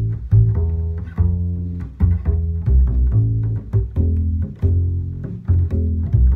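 Double bass played pizzicato, walking a swing jazz bass line: one plucked note per beat at a brisk 140 bpm, each note starting sharply and fading before the next.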